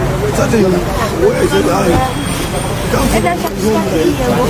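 A man talking, with steady road traffic noise behind him.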